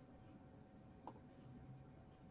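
Near silence: faint room tone with a single faint click about a second in.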